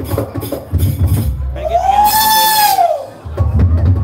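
Live Janger gamelan percussion: drum strikes, then a single long tone that rises and falls in pitch in the middle, then the drumming starts again near the end.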